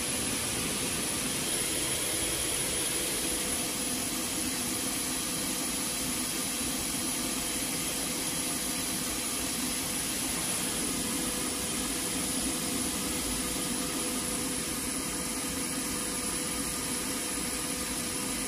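Steady jet aircraft turbine noise: an even rush with a thin high-pitched whine, unchanging throughout.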